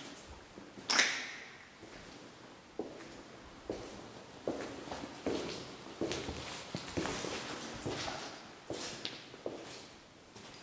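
Footsteps on a debris-strewn hard floor, a step roughly every 0.8 seconds from about three seconds in, with crunching and rustling among the steps. About a second in there is one louder sharp crack or knock that rings out briefly.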